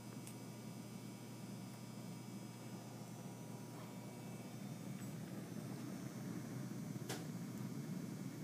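Faint steady low hiss of a lit Bunsen burner flame, with a single light click about seven seconds in.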